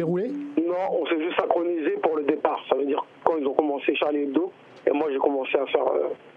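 Speech only: a voice speaking French over a telephone line, thin and narrow-band like a phone call.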